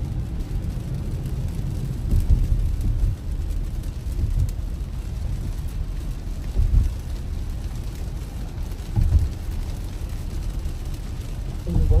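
Steady low road and tyre rumble inside a Tesla's cabin on a rain-soaked highway, with rain on the car, and a few dull low thumps at intervals of roughly two seconds.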